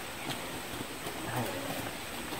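Footsteps of several people walking on a dirt path covered in dry leaves, as a few faint scattered ticks over an outdoor background with a thin steady high tone, and faint voices near the middle.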